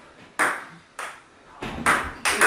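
Table tennis rally: a celluloid-type ball clicking sharply off paddles and the table, about four hits in two seconds, each with a short ring, the last the loudest.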